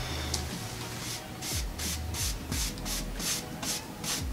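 A paintbrush's nearly dry bristles dragged quickly back and forth across a painted wooden board, dry-brushing paint on: a scratchy swish at about four strokes a second, starting about a second in.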